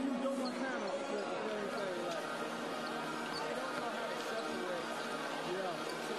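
Arena ambience: general chatter of many voices in a large hall, with basketballs bouncing on the hardwood court during pregame warmups.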